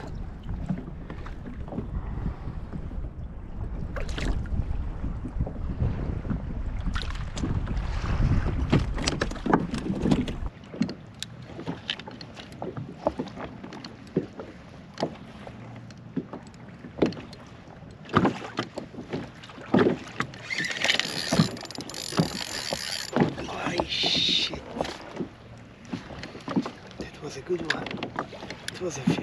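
Wind rumbling on the microphone for about the first ten seconds, stopping suddenly, then small waves slapping and knocking against a kayak's hull, with a brief hiss of spray about two-thirds of the way in.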